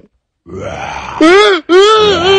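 A person's loud non-speech vocal sounds: a breathy rush, then two pitched, burp- or groan-like sounds, each rising then falling in pitch, the second longer.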